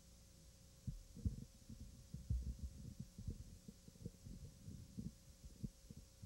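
Irregular low thumps and rumbling on the microphone, starting about a second in, over a faint steady hum.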